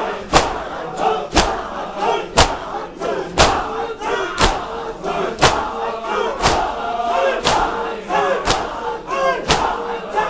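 A crowd of men beating their chests in unison (matam), one sharp slap about every second, with massed voices chanting between the strokes.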